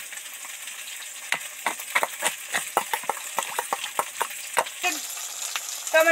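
A metal spoon stirring ground spices and water into a paste in a steel bowl, clinking against the bowl in a quick irregular run over a low steady hiss.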